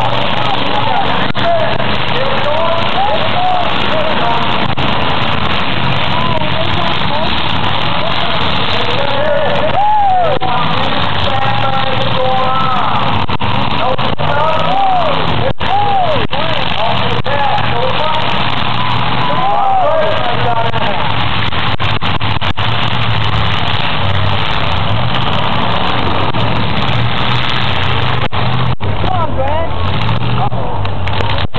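Several demolition derby cars' engines revving up and down over and over, amid continuous crowd voices, with an occasional sharp knock.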